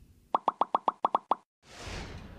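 A quick run of about nine short popping sound effects, roughly eight a second, lasting about a second. A soft rush of noise follows near the end.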